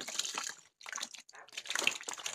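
Live snakehead fish thrashing in shallow water in a plastic basin: irregular splashes and wet slaps, with a short lull a little after half a second in.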